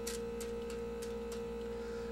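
Steady electrical hum: a low buzz with a constant mid-pitched tone, and a few faint ticks in the first second and a half.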